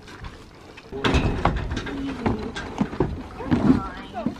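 Horses being led off a trailer: a few dull hoof knocks on the trailer ramp amid rustling and handling noise, starting about a second in.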